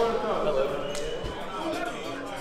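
Several people talking indistinctly, with a sharp knock about a second in and a brief low thump just after.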